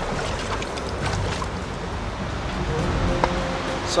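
Fast river rapids rushing as a steady, even roar of water. Faint music comes in near the end.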